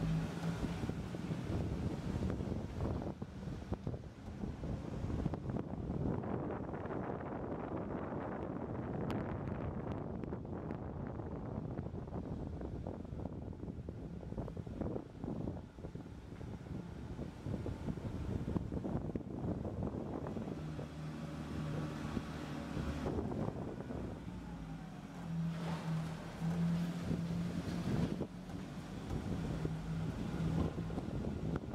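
Car moving slowly, heard from inside: a steady low rumble of engine and tyres, with a low drone that fades in and out and is strongest over the last ten seconds.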